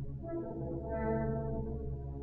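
Orchestral music from an opera score: sustained chords that swell about a second in.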